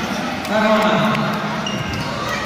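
Spectators' voices calling out in a large echoing sports hall, with a couple of dull thuds.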